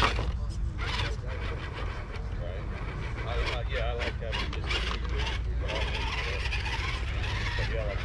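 Electric motor and geared drivetrain of a small RC scale crawler truck whirring in short stop-start bursts as it is driven over rocks.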